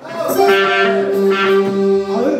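Live band music starting up: a keyboard holds one long steady note with a lower note under it, while brighter notes sound over the top.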